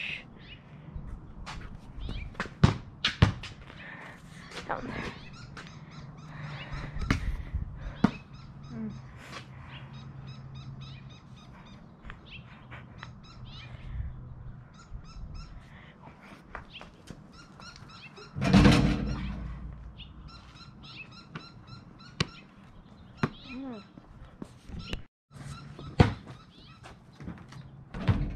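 Basketball thuds at scattered, irregular moments: a ball bouncing on a concrete driveway and striking the backboard and rim of a portable hoop. About two-thirds of the way through there is a louder burst lasting about a second, and birds chirp faintly in the background.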